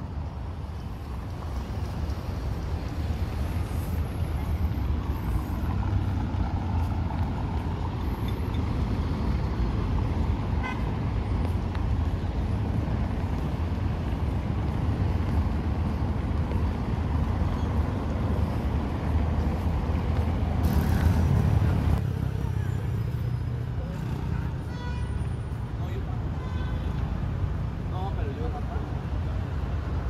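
Steady city street traffic noise, the running of many cars on a busy road, with an occasional car horn.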